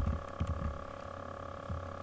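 A few soft computer-keyboard keystrokes over a steady faint electrical hum.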